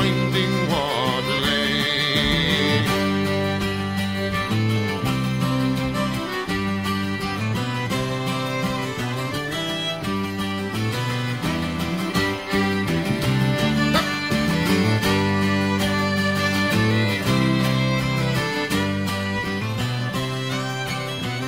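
Instrumental break of a folk ballad: a fiddle plays over guitar and a low, steady bass line, with no singing.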